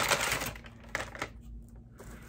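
Product packaging being handled: a short rustle at the start, then a few light, scattered clicks and taps.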